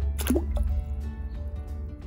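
Small toy doll dropped into the water of a toy pool: a short splash about a quarter second in as it goes under and sinks, followed by faint small water sounds.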